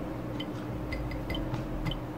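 Steady low background hum with faint, irregular light ticks and clicks.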